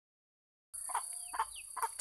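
Chicken clucking: a few short, separate clucks, one with a falling pitch, starting just under a second in after a silent start.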